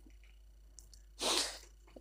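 One short, breathy huff from a person, like a sharp exhale, a little over a second in, lasting under half a second in an otherwise quiet room.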